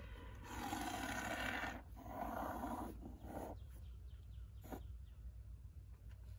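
Inverted aerosol can of American Polywater two-part duct-sealant foam spraying into a PVC pipe: two hissing blasts of about a second and a half each. A faint click follows a little later.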